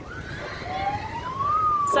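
A siren wailing: its pitch climbs smoothly for about a second, then begins a slower fall.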